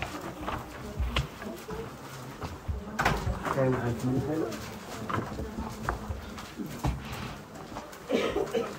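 A low, indistinct voice murmuring about three to four and a half seconds in, amid scattered small knocks and rustles in a room.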